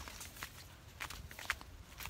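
Faint footsteps on a dirt footpath strewn with dry grass and twigs, a few soft steps about half a second apart.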